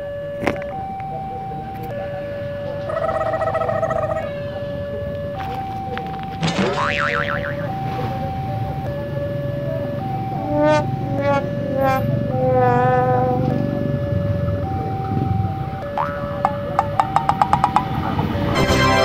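Edited cartoon sound-effect track: a steady electronic tone switching back and forth between two notes, with a springy rising boing about six seconds in, warbling chirps around ten to thirteen seconds, and a fast run of pops near the end, over a low rumble.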